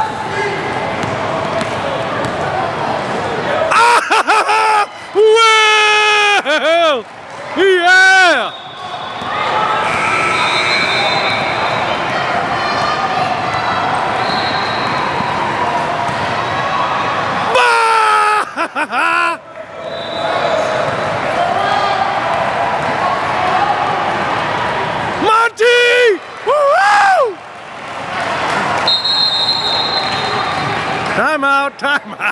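Basketball game in a gym: a ball dribbling on the hardwood floor under steady crowd and player noise, with loud, high-pitched yells from spectators about four seconds in, again midway and near the end.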